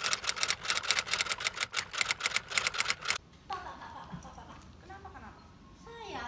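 A fast run of typewriter keystrokes clacking for about three seconds, then stopping abruptly. Faint voices follow.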